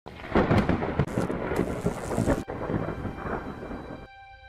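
Thunder rumbling over heavy rain, with a brief break a little past halfway, then fading toward the end.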